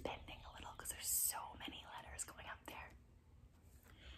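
A woman whispering softly, breathy and without voice, with a sharp hiss about a second in.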